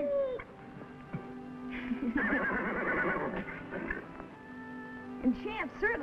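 A horse whinnies, a quavering call lasting about two seconds that starts about two seconds in, over held notes of orchestral underscore.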